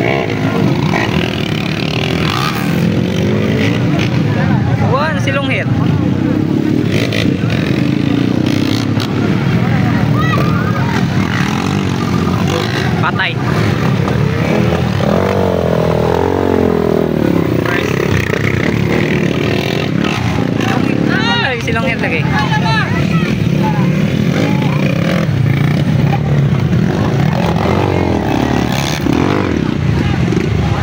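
Dirt bike engines running and revving as they pass, the pitch rising and falling several times over a steady rumble, with crowd voices mixed in.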